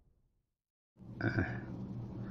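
Dead silence for about a second, then a steady low hum comes in with a brief throaty vocal sound from a man, like a grunt or throat noise.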